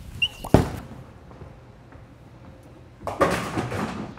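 A bowling ball is released and lands on the wooden lane with a loud thud about half a second in, then rolls away down the lane. Just after three seconds a clatter of pins being hit follows and lasts about a second.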